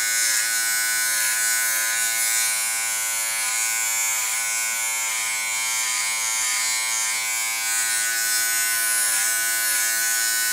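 Small Wahl electric hair clipper running steadily, buzzing as it trims the hair at the nape, its tone wavering slightly now and then.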